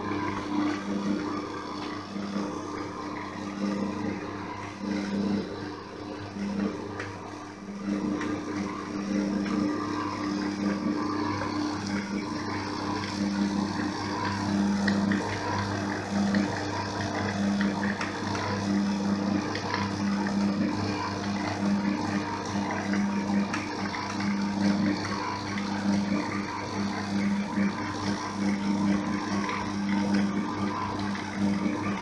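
Electric stand mixer's motor running steadily as its dough hook kneads a stiff bread dough in a stainless-steel bowl, the hum pulsing regularly about once a second as the hook works through the dough.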